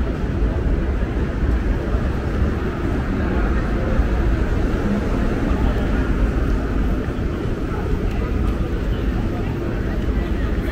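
Steady urban street ambience: a constant low rumble with indistinct voices mixed in.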